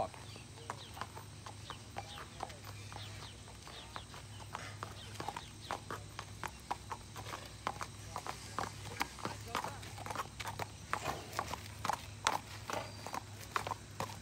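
A horse's hooves clip-clopping at a walk on a paved road, the steps getting louder in the second half as the horse comes closer.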